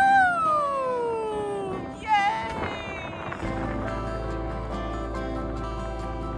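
A long pitched squeal or call that rises and then slowly falls in pitch, with a shorter one about two seconds in, as the sail goes up. Background music with a steady bass comes in just past halfway.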